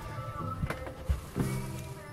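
Music playing through a pair of Yamaha patio speakers mounted inside a motorhome, at a moderate level.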